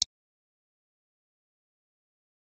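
A short click at the very start, then silence.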